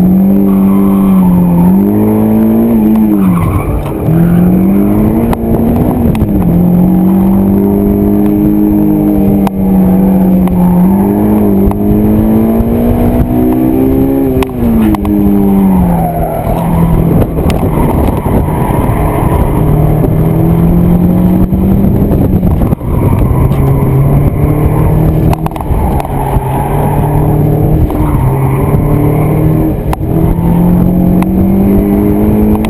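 2002 Honda S2000's 2.0-litre inline-four engine driven hard, its note rising and falling over and over with throttle and gear changes, with a sharp drop about halfway through. Heard from inside the open-top cockpit.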